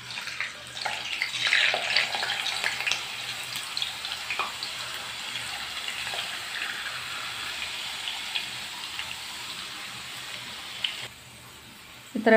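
Raw potato slices deep-frying in hot oil, sizzling and crackling. Loudest in the first few seconds as fresh slices are dropped in, then a steadier sizzle that cuts off suddenly near the end.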